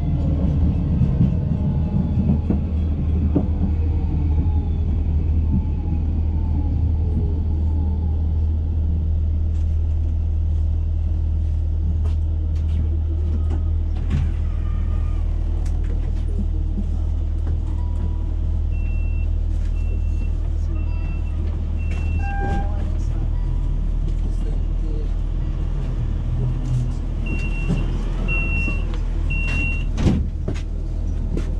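Electric tram running, heard from inside: a steady low hum throughout, with a whine that falls in pitch over the first several seconds. Short high beeps sound in a run of four past the middle, then three more near the end.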